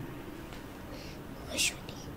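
Quiet room tone, broken about one and a half seconds in by a brief whispered, hissing syllable from a person's voice.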